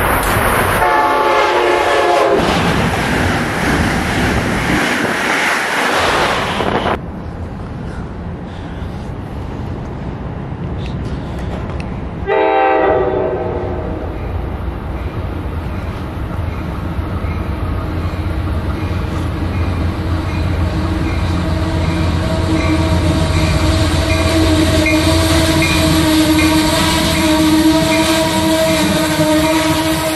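Passenger train horn blowing a chord about a second in over loud train noise that cuts off suddenly near seven seconds. A second short horn blast comes near twelve seconds, then a Shoreline East train hauled by a Genesis P42DC diesel locomotive rolls in with a steady hum that grows louder, a faint ding repeating over it.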